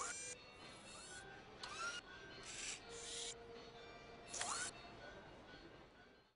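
Faint electronic robot sound effects: three short rising chirps and several brief whirring hisses, over a faint steady tone.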